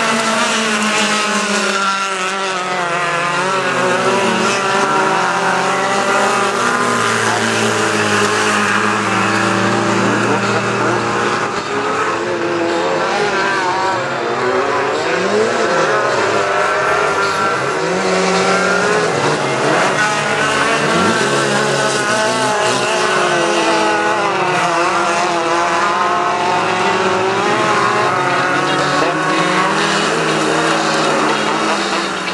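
Several small-engined autocross cars of the up-to-1600 cc standard class racing together on a dirt track, their engines revving at once with pitches climbing and falling as they accelerate and shift.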